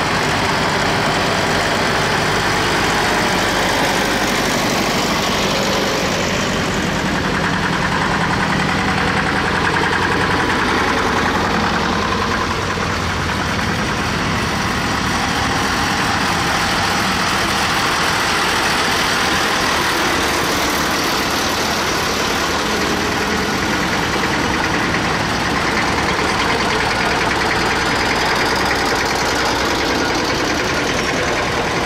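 Engines of vintage farm tractors and an old truck running at low speed as they pass one after another, a continuous engine sound that changes in pitch as each vehicle goes by.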